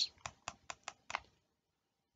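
A few light, sharp clicks, about five at uneven spacing over the first second or so, from the computer input used to write on the slide.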